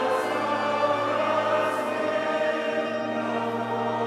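Background choral music: a choir singing slow, sustained chords over a low, steady accompaniment.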